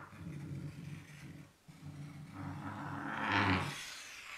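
Chalk dragged across a blackboard, skipping as it goes and leaving a dotted line, giving a rough, rattling buzz. It stops briefly about a second and a half in, then grows louder and brighter to its loudest point shortly before the end.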